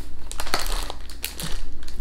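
Plastic wrapping on a packet of Delicje biscuits crinkling and crackling irregularly as it is picked up and handled.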